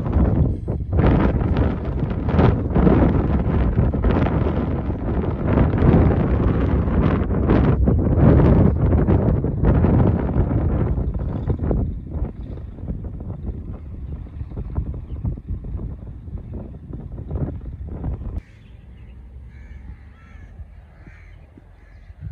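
Wind buffeting the microphone in loud, uneven gusts. The gusts ease off after about twelve seconds and drop away sharply near the end. Bird calls sound among the wind.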